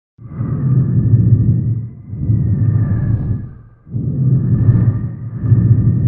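Logo intro sound effect: a series of deep rumbling swells with whooshes, each a second or two long, separated by short dips, with a faint steady high tone above them.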